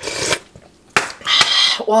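Metal spoon clinking and scraping against a ceramic bowl as broth is scooped up, with a sharp click about a second in.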